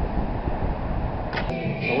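Steady low rumble of outdoor background noise. About a second and a half in there is a sharp click as the recording cuts, and a man's voice starts just before the end.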